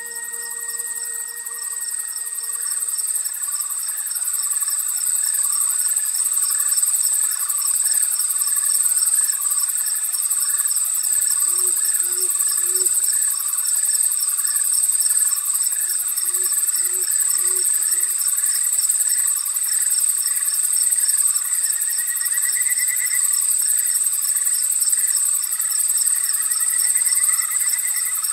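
A dense insect chorus, crickets trilling steadily high up with a pulsing chirp pattern beneath, swelling in over the first few seconds as fading music tones die away. Twice in the middle, an owl gives a short run of three low hoots.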